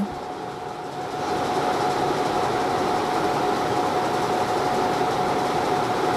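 Steady mechanical whooshing noise with a constant mid-pitched hum running through it. It grows a little louder about a second in and then holds even.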